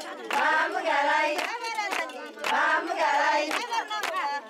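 A group of women singing a wedding song in phrases, with sharp hand claps among the singing. There is a short break in the singing about halfway through.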